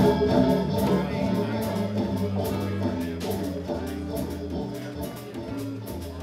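Live jazz combo playing, led by a Hammond organ holding sustained chords over a steady bass line and drums. The music gradually gets softer.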